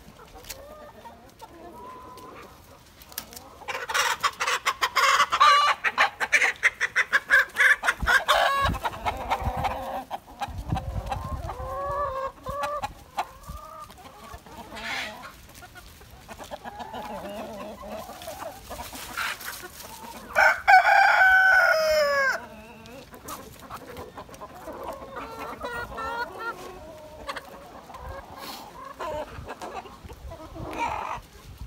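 A flock of free-range chickens clucking, with a loud run of rapid cackling from about four to nine seconds in. A rooster crows once, about twenty seconds in.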